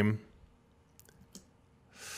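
A man's voice trails off, then near quiet with a few faint, short clicks about a second in.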